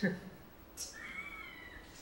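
A brief, faint high-pitched cry about a second in, its pitch gliding up and then down.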